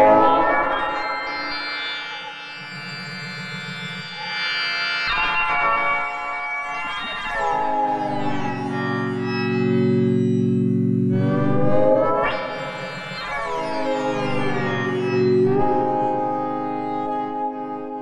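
Spectrasonics Omnisphere software synthesizer playing a bell-like patch through the Touché controller: sustained chords that change about every few seconds, with sweeping pitch glides and a shifting tone as the mapped Shape and Hard Sync parameters move. The last chord fades away at the end.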